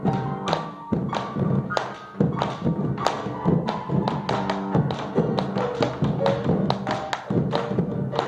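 Chacarera music: a bombo legüero drum beating out the rhythm in quick, sharp strikes over sustained pitched accompaniment.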